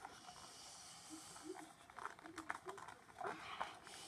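Faint rustling and scattered clicks of toy packaging being handled and pulled at, with quiet muttering and breathing from the effort of trying to get it open.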